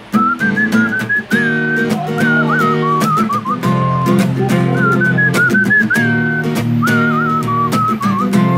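A man whistling the song's melody in several short phrases over his own strummed acoustic guitar chords.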